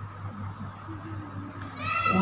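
A pause between phrases of a boy's melodic Quran recitation through a microphone, with a steady low hum and a faint voice. Near the end the reciter's voice rises into the next long chanted phrase.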